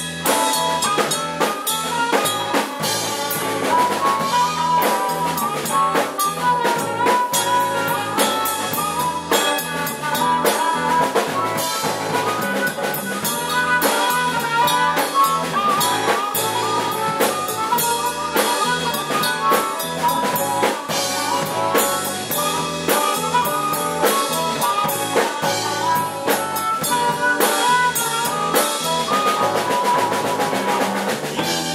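Live band playing an instrumental passage: harmonica played into a hand-held microphone carries a bending melodic line over electric bass, electric guitar and a steady drum-kit beat.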